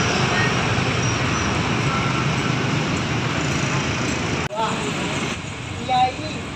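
Street ambience outside a busy market: steady traffic noise with indistinct people's voices mixed in. The sound cuts out sharply for an instant about four and a half seconds in, then carries on slightly quieter.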